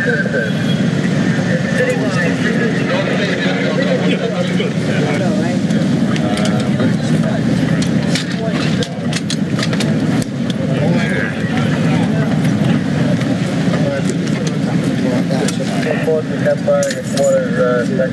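Indistinct voices of several people talking over one another, above a steady low engine hum, with scattered short clicks and knocks.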